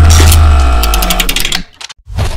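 A short musical sting for a channel's logo: a loud hit with a heavy deep bass and layered tones, then a rapid run of sharp ticks, cutting off about one and a half seconds in.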